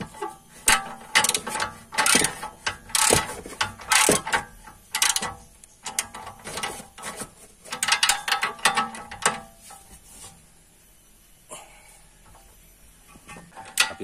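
Ratchet socket wrench clicking in repeated bursts as it tightens a stabilizer link nut, one burst with each swing of the handle. The clicking stops about ten seconds in, leaving only a few faint clicks near the end.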